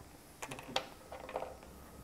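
A few faint clicks like keys tapping on a computer keyboard, with a faint voice murmuring briefly just after a second in.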